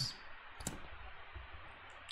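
Faint room tone with a single short, sharp click about two-thirds of a second in.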